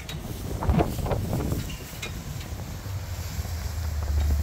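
Wind buffeting the microphone, a steady low rumble, with a brief louder burst of noise about a second in.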